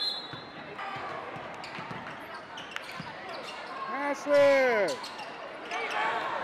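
Live basketball game sound in a gym: a ball bouncing on the hardwood in scattered knocks over a low crowd murmur, with one loud shouted call, falling in pitch at its end, about four seconds in.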